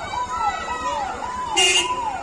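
A siren wailing in fast repeating cycles, about two a second, each one rising, holding, then falling. About one and a half seconds in there is a brief, louder burst.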